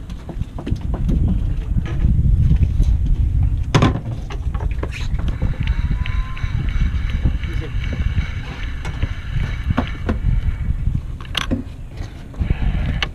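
Wind buffeting the microphone, with scattered clicks and, from about five seconds in until near the end, a steady whir from a Penn spinning reel being cranked as line is wound in.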